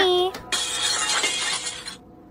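Glass shattering sound effect: a crash of breaking glass that starts about half a second in, lasts about a second and a half and cuts off suddenly.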